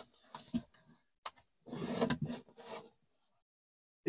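Fingers rubbing and scraping along plywood and fibreboard edges, with a few light clicks and a sharp tap a little over a second in, then a longer scrape.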